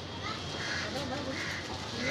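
A crow cawing repeatedly, short harsh calls coming several times over a background of murmuring voices and a steady low hum.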